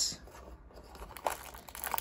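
Faint rustling and crinkling of a cardboard advent-calendar door and a small plastic bag of LEGO pieces being handled, with a small tick about a second in and a few light ticks near the end.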